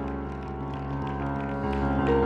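Background church music: a keyboard holding sustained chords over a low bass note, with the chord changing near the end.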